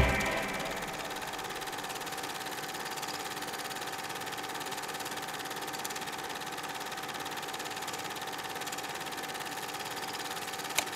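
The music cuts away at the very start, leaving the steady whirr and fast, even clatter of a running film projector, with a faint constant hum.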